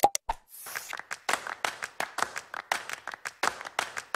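End-screen animation sound effects: a mouse click, a brief whoosh, then a quick run of pops or taps, about five a second.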